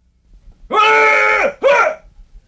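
A high, child-like voice yelling: one long held cry, then a short one that falls in pitch.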